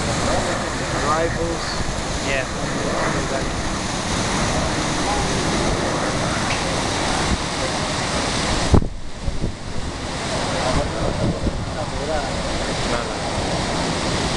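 Steady wind noise buffeting the microphone, with faint voices in the background. About two-thirds of the way through comes a sharp knock, and the noise briefly drops out.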